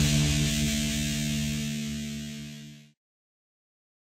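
A punk band's last electric guitar chord rings out and fades, then cuts off into silence about three seconds in.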